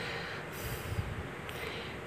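A faint intake of breath through the nose over low room noise.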